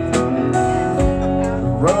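Live rock band playing: electric guitar, bass, keyboards and drums, with steady drum hits through an instrumental gap between sung lines. A male lead vocal comes back in right at the end.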